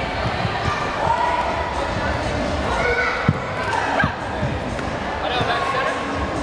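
Taekwondo sparring in a gym: scattered thuds of kicks and footwork, with one sharper hit about three seconds in, over the voices of the crowd echoing in the hall.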